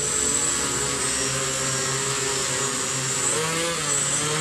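OFM GQuad-8 octacopter's eight electric motors and propellers running steadily in a low hover, with a slight shift in pitch near the end.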